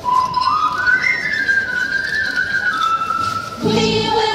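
Whistling of a short tune: one clear tone stepping up over a few notes, held, then stepping back down. Near the end, music with singing starts again.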